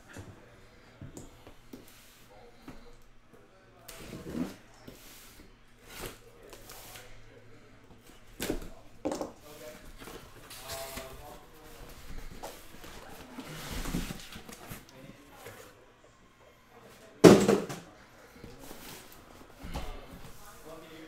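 Cardboard shipping cases being opened and handled: flaps and boxes scraping and knocking at irregular intervals, with one louder thump near the end as a box is set down on the table.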